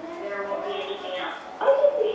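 Indistinct voices talking, with a louder, short voice-like cry near the end.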